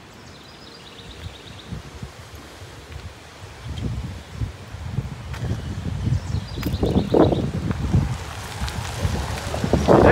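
Wind blowing through trees and rustling leaves. From about four seconds in, gusts start buffeting the phone's microphone with a low rumble that grows stronger toward the end.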